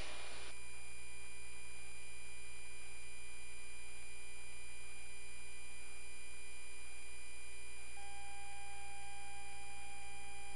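Steady electrical hum with several constant thin tones on the cockpit audio feed during a jet's approach; a further steady tone joins about eight seconds in.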